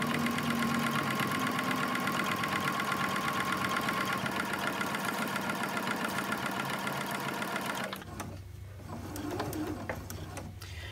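Electric sewing machine stitching steadily through the three layers of a quilt sandwich at an even speed, a fast regular needle rhythm that stops about eight seconds in.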